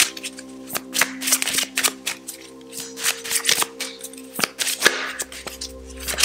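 A deck of oracle cards being shuffled by hand, a quick irregular run of soft flicks and slaps. Steady sustained background music tones run underneath.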